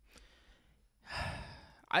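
A man's audible breath, a soft breathy sigh, after about a second of near silence; it starts about a second in and fades away over most of a second.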